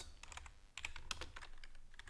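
Computer keyboard typing: a quick, irregular run of about a dozen key clicks.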